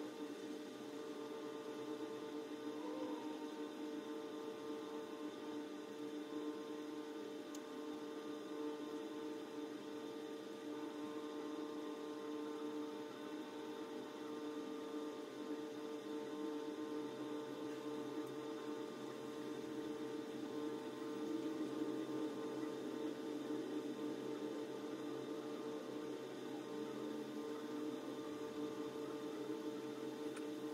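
Steady electrical hum of a running appliance, several held tones that do not change.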